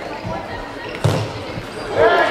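A football struck once about a second in, a single sharp thud in a large sports hall, over the voices of spectators.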